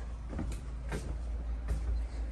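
A few soft knocks, footsteps on the trailer's floor as the camera is carried forward, over a steady low hum.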